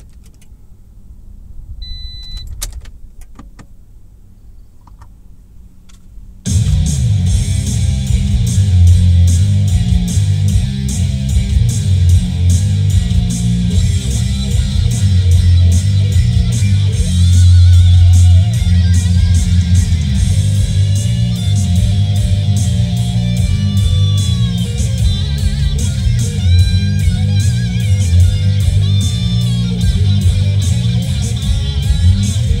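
Blues-based hard rock with electric guitar playing loudly on a car stereo. It starts suddenly about six seconds in, after a few quiet seconds with faint clicks and a short beep.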